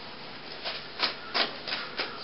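About four short rubbing, rustling strokes in quick succession: the handling of a cloth hand puppet being moved behind the set.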